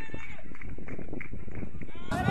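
Distant shouts and calls of footballers on the pitch during play, over a steady outdoor rumble.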